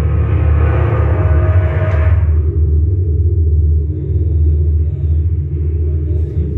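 Live rock band playing an instrumental passage with electric bass and electric guitar, heavy in the low end. The higher guitar parts fall away about two seconds in, leaving mostly bass.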